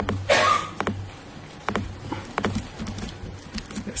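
Scattered light clicks and taps of a laptop keyboard and trackpad being operated, with a steady low hum underneath.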